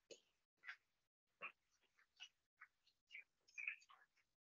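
Faint applause from a seated auditorium audience, heard only as irregular scattered short bursts through a streamed video-call feed rather than as a continuous wash of clapping.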